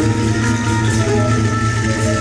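Live fusion band playing, with a bouzouki being plucked over steady bass and drums.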